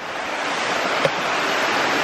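A steady, even rushing noise that swells in over the first second and a half, with a small click about a second in.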